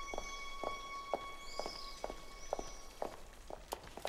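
Footsteps of two people walking on a tiled stone floor: hard shoe and high-heel steps clicking evenly, about two a second. Faint high bird chirps sound in the first half.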